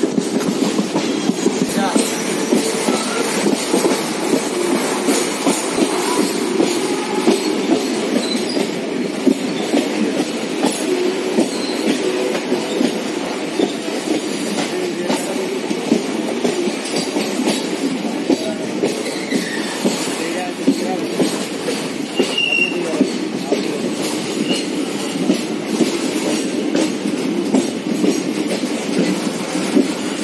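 Amaravati Express passenger train running at speed, heard from on board: a steady rumble of wheels on rail, dotted with frequent clicks and knocks from the track.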